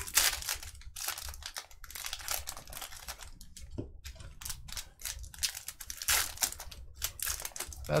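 Foil trading-card pack wrappers crinkling and tearing as packs are opened by hand: an irregular run of crackly rustles.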